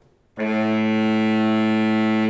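Saxophone quartet entering together about a third of a second in, holding one loud, steady chord.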